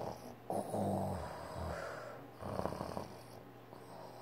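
A boy snoring: a long snore starting about half a second in, then a shorter one a little after two seconds.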